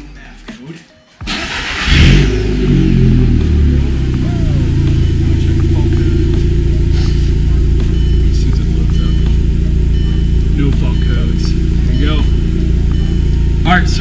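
VW Mk4 1.8T turbo four-cylinder engine, stage 3 with a K04 turbo, cranking and catching about a second in. It flares up briefly and then settles into a steady idle. It is running a MAF-less tune with the MAF sensor unplugged.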